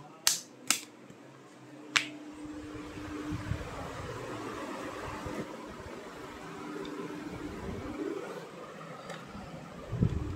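Three sharp clicks in the first two seconds, then a steady low rushing noise with faint rustling through the rest.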